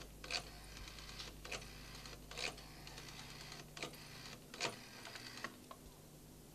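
A desk telephone being dialled, number by number: a series of faint mechanical clicks, with runs of quick ticks between about six louder clicks spaced unevenly.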